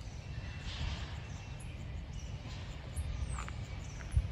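Faint outdoor ambience: a few small, high bird chirps over a low, steady rumble.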